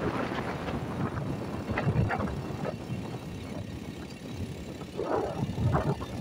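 Engine and tyre noise of a car driving on a wet road, heard from inside the vehicle, a steady rough rumble that grows louder again about five seconds in.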